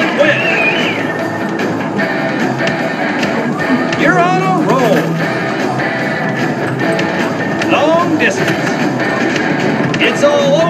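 Arcade din: loud background music and electronic game sounds, with voices in the crowd and short gliding tones about four and eight seconds in.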